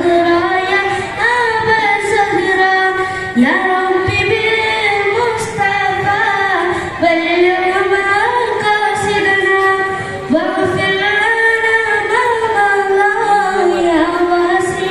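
A boy's high, unbroken voice sings a Nabidina devotional song unaccompanied through a microphone and PA. He holds long, ornamented notes in phrases of about three to four seconds, with brief breaths between them.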